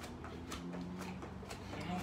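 Light thuds of feet landing on a floor, a few spread across the two seconds, as a person switches lunge legs while throwing punches.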